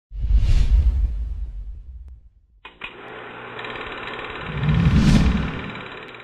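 Intro sound effects: a deep boom that fades, then about three seconds in a steady buzzing drone starts, with a whoosh swelling and fading around five seconds in.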